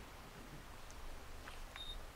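Quiet room with a few faint small clicks, and a brief high-pitched beep near the end.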